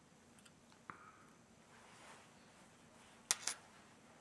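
Quiet work at a fly-tying vise: a faint tick about a second in, then two short sharp clicks a little after three seconds, small handling noises of the tying tools.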